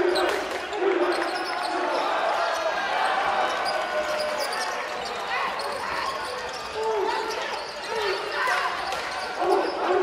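Basketball bouncing on a hardwood gym court during live play, with a few bounces near the start and more in the last few seconds.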